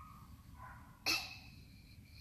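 A person's brief, sharp breath about a second in, over a quiet room.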